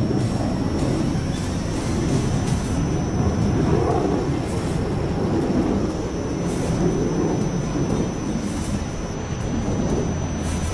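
Jet noise from a JF-17 Thunder fighter's turbofan engine in flight: a continuous low rumble with slow wavering swells as the jet moves across the sky.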